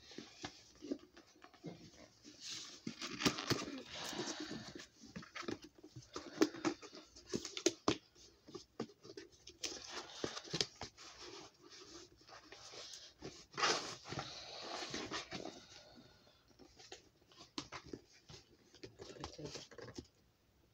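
Cardboard gift box being handled and opened: the flaps and the packing inside rustle and scrape in bouts, with many small clicks and taps.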